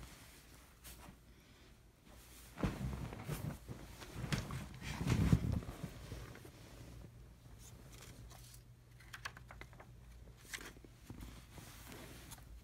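Rustling and phone-handling noise with a roll of tape being handled, loudest from about three to six seconds in, then a few light clicks and crackles near the end.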